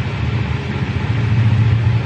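Electric fan running close to the microphone: a steady low hum under an even rushing noise.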